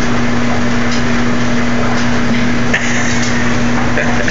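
Top-loading washing machine running: a steady low hum over an even rushing noise.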